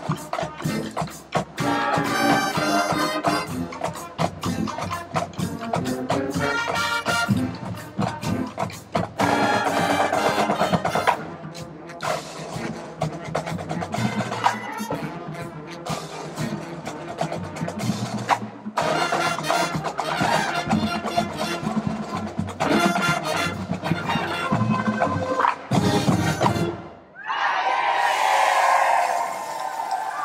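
High school marching band playing: brass, saxophones, clarinets and flutes over a snare and bass drumline. The music stops near the end and a burst of crowd cheering follows.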